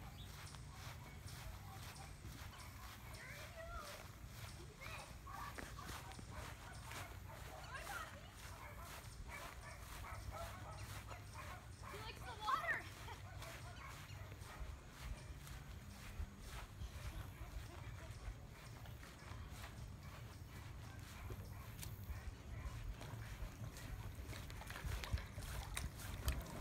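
Footsteps on grass as someone walks with a phone, over a steady low rumble of handling and wind on the phone's microphone, with faint distant voices now and then.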